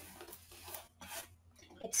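A woman singing unaccompanied, caught in a quiet pause between sung lines with a few soft, breathy noises. The next line starts right at the end.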